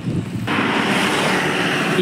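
Road traffic on the highway: a low rumble, then a loud, steady rush that sets in abruptly about half a second in.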